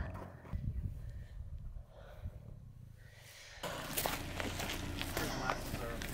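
A low outdoor rumble, then, from a sudden change a little past halfway, irregular footsteps on grass with patches of snow.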